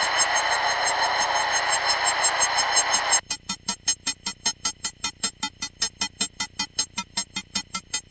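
A rapid electronic pulsing, about six even pulses a second, that starts abruptly. For its first three seconds it sits over a hiss, then it goes on alone.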